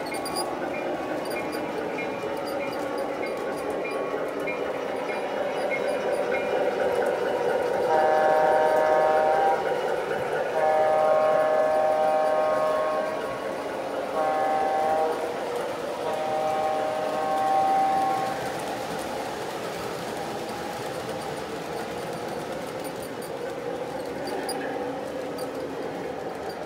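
The on-board sound system of an MTH O gauge Alco RS-3 model diesel sounds its horn, a chord of several notes, in the long-long-short-long grade-crossing pattern. Under it, the train runs steadily along the track.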